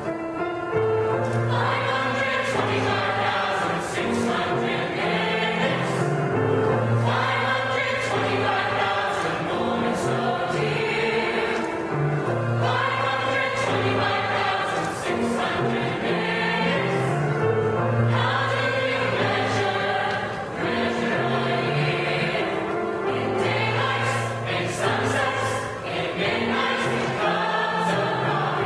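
A mixed choir of female and male voices singing together, with sustained chords held throughout.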